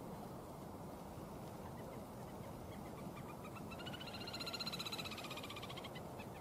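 Little grebe giving its long, rapid whinnying trill: it starts faint, swells to its loudest about four seconds in, then fades near the end.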